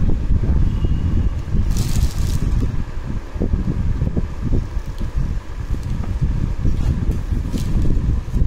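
Rayon kurti gown being handled and unfolded on a table: fabric rustling over a steady low rumble on the microphone, with a short swish about two seconds in.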